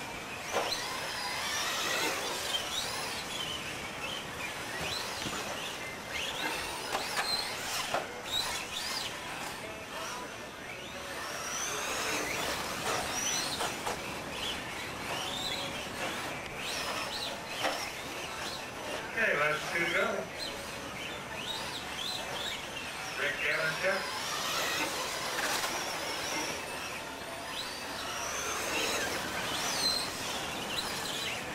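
Radio-controlled off-road trucks racing on a dirt track, their motors whining and swooping up and down in pitch with the throttle, over a background of indistinct voices.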